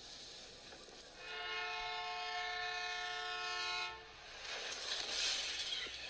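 Locomotive air horn sounding one long steady blast of about three seconds over the rushing noise of a train plowing through deep snow. The rushing swells after the horn stops.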